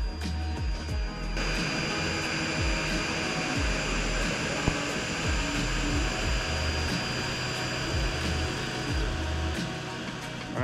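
Music with a steady bass beat, and from about a second and a half in a steady rushing fan noise with a thin high whine over it, from the cooling fan on the Atomstack A5 Pro's laser module.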